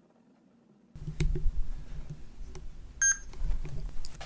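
After about a second of silence, room noise with a few faint clicks, then a short electronic beep about three seconds in.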